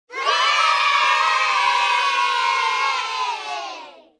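A crowd of children cheering and shouting together, held for about three and a half seconds, slowly falling in pitch and fading out near the end.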